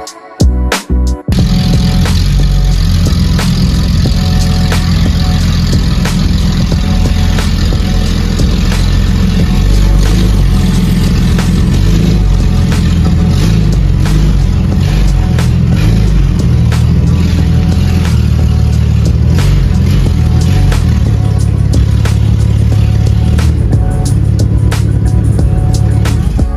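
The BMW 128i's 3.0-litre inline-six engine running steadily as the car is backed into a garage. It comes in loud about a second in, with background music underneath.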